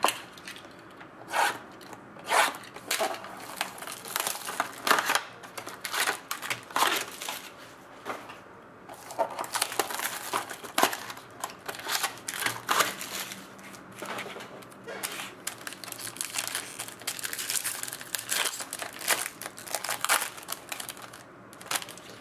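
Foil-wrapped Triple Threads card packs crinkling and crackling as they are handled, slid out of their cardboard box and torn open. Irregular sharp rustles give way to two longer spells of crinkling, one midway and one near the end.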